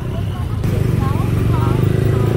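Road traffic: a steady low engine hum from motorbikes and cars passing close by, stepping up in loudness about half a second in, with voices talking over it.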